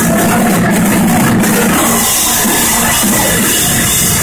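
Heavy metal band playing live and loud: distorted electric guitars, bass guitar and a drum kit in one steady wall of sound.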